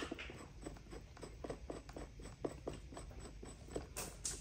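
Faint, irregular light clicks and rubbing, a few a second, from the threaded extension screw on top of a 4-ton bottle hydraulic jack's ram being turned by hand to raise it.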